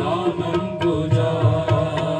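Live qawwali-style naat: a sung melody with gliding notes over harmonium accompaniment, with tabla strokes keeping a steady rhythm.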